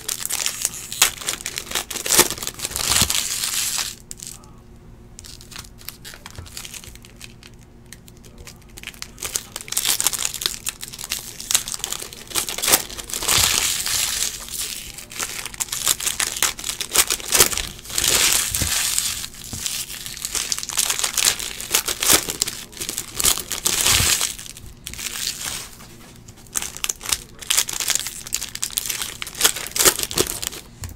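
Foil trading-card pack wrappers crinkling and tearing as packs are ripped open by hand. The sound comes in repeated bursts, with quieter pauses about four seconds in and again near the end.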